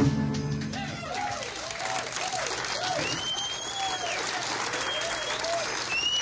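Studio audience applauding, cheering and whistling as a song's last chord rings out and fades over the first second or so.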